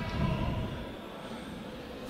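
Faint steady background ambience of an indoor sports hall during a boxing bout, with a slight low swell about a second in and no distinct impacts.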